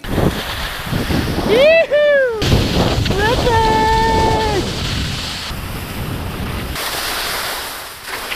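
Wind rushing over the helmet-mounted microphone and skis sliding on snow during a fast ski descent. Two loud wordless whoops from a skier cut through it: a short one that rises and falls about a second and a half in, and a long held one a couple of seconds later.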